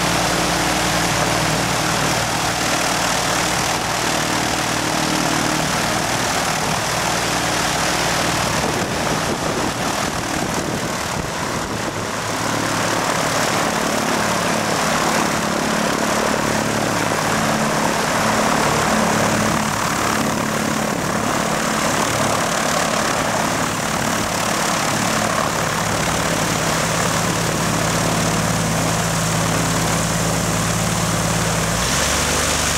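Light single-engine propeller aircraft running at low power as it taxis past, a steady engine and propeller drone. Partway through the note dips briefly and settles at a slightly different pitch.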